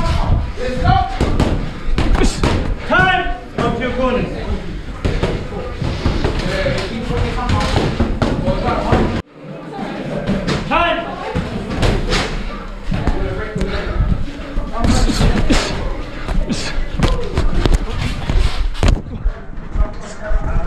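Boxing gloves in sparring: a run of padded thuds and slaps at irregular intervals from punches landing and being blocked, heard close up from a camera on the boxer's head. The sound cuts out abruptly about nine seconds in, then the thuds resume.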